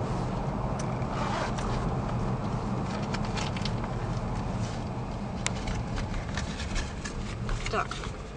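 Steady low road and engine rumble heard from inside a car as it slows toward a toll booth, with scattered light clicks and rustles from handling inside the cabin.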